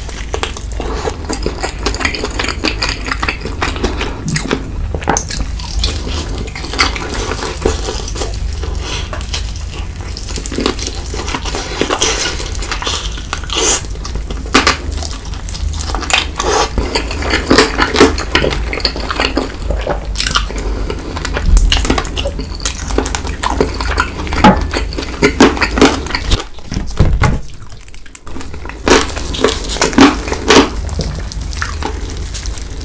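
Close-miked chewing and crunching of Cheetos-crusted fried chicken: a steady run of crisp crackles and wet mouth sounds, briefly quieter near the end. A steady low hum runs underneath.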